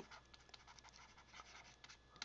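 Faint scratching and light ticks of a stylus writing on a tablet.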